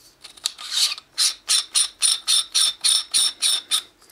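Metal T-2 threads of a Baader 40 mm extension tube being screwed onto an eyepiece by hand: a few scratchy rasps, then a rapid, even series of short scraping strokes, about five a second, as the tube is turned.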